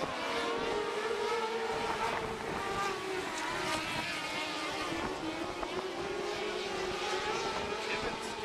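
Several small winged sprint-type race cars running at speed together, a steady engine drone that wavers in pitch as they circle the track.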